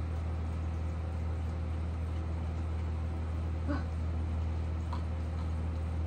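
A steady low hum throughout, with two brief, high squeaky cries from a household pet, about three and a half and five seconds in.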